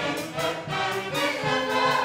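Live band music, with saxophones and brass playing sustained notes over a steady beat, and a woman singing into a microphone.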